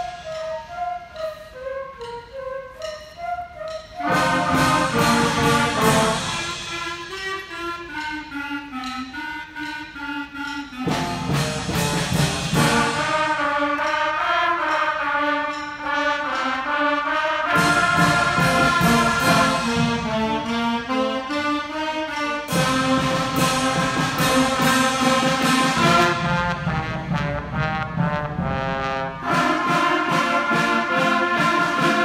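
Sixth-grade school concert band playing a piece in which the sections take turns: a lighter passage led by the flutes opens, and the full band comes in about four seconds later. Trumpets and saxophones are featured further on, with the texture changing every few seconds.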